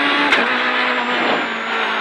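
Renault Clio Super 1600 rally car's 1.6-litre four-cylinder engine running hard at speed, heard from inside the cabin, with a steady note that dips slightly near the end.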